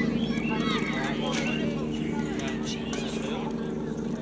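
Distant voices shouting and calling across a football pitch, over a steady low hum. There is a sharp knock about a second and a half in.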